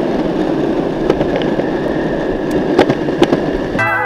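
Electric skateboard rolling fast over pavement: a steady rumble from the wheels, with a few sharp clicks as they cross cracks or joints. Music starts just before the end.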